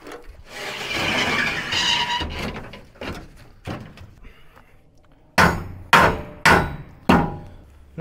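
A sheet of aluminum diamond plate scraping for about two seconds as it is slid onto a rusted steel truck bed. A couple of light knocks follow, then four sharp hammer blows about half a second apart as the plate is knocked into place.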